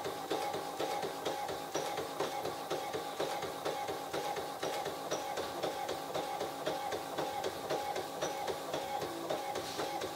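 Brother DCP-130C inkjet printer printing a copy in best photo quality mode: a steady motor whine with a regular ticking, several ticks a second, as the print mechanism works.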